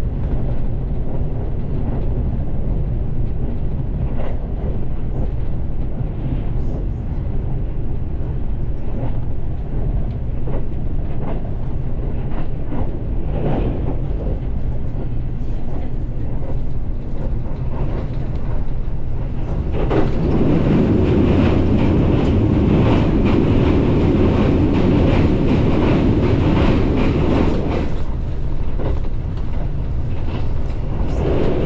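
Running noise of a limited express train travelling at speed: a steady rumble with occasional clicks of the wheels over rail joints. About twenty seconds in it suddenly turns louder and fuller for some eight seconds, then eases back.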